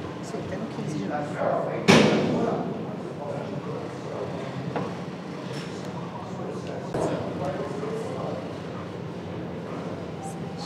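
A loud thud about two seconds in that dies away over half a second, then a softer knock about seven seconds in, over faint voices and a steady low hum.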